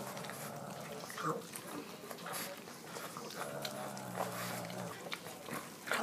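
A cat and a pug biting and chewing kernels off an ear of corn on the cob: scattered short wet clicks of teeth and mouths on the cob. A low held sound lasts about a second and a half past the middle.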